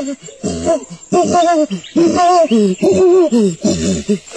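Chimpanzee hooting: a loud series of hoots, each rising and falling in pitch, coming quicker near the end.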